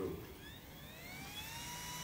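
Small electric motor of a handheld battery-powered appliance switching on: a faint whine that rises in pitch for about a second and then holds steady.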